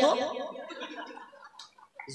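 A man's amplified voice through a public-address microphone trailing off on a word and fading away over about a second and a half, leaving a short pause with a faint click near the end.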